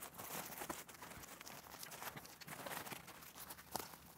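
Faint rustling and scattered light clicks of a large fabric reflector being stretched over and fitted to its metal frame, then handled.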